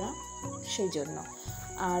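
Crickets chirring in a steady, high-pitched trill that does not let up.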